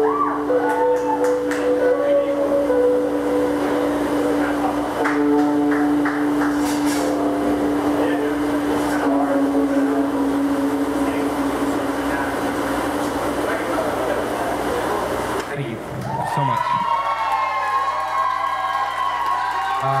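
Live rock band with electric guitars playing, with long held notes, until the music stops about fifteen seconds in; a voice follows near the end.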